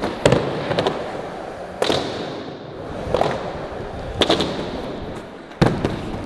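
Skateboard cracks, about six in all: tail pops and the board slapping down on the hard ramp surface during attempts at a fakie gazelle flip. Each one echoes through the large indoor skatepark hall.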